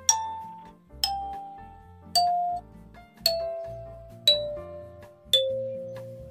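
8-key mini kalimba with metal tines on a clear acrylic body, plucked one note at a time about once a second, stepping down a scale; each note rings and fades before the next.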